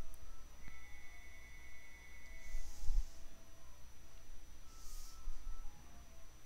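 Quiet pause between spoken lines: low room tone with a faint steady high whine, and two soft breaths into the microphone about two and a half and five seconds in.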